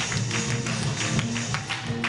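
A live church band plays without vocals: a drum kit keeps steady strokes about three a second over held low notes from the band's instruments.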